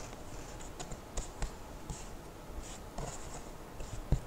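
Paintbrush mixing paint on a cardboard palette: faint, scattered bristle scratches and light taps.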